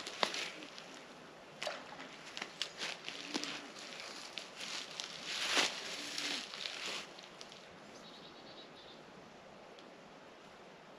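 Rustling and crackling in dry grass close to the microphone, with scattered clicks, busiest about halfway through and settling to a quiet outdoor background for the last few seconds.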